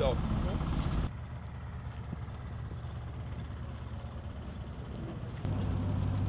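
A vehicle engine running steadily, a low hum. It drops quieter at a cut about a second in and comes back louder and fuller at another cut near the end.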